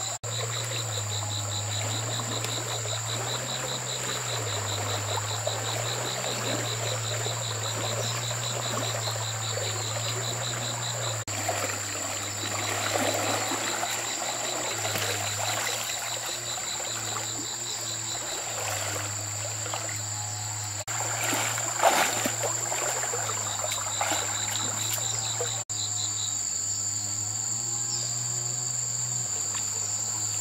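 A continuous insect chorus, a steady high buzz with a fast pulsed trill, over flowing stream water. About two-thirds through, a lift net is raised out of the water and there is a short burst of splashing and dripping, the loudest moment.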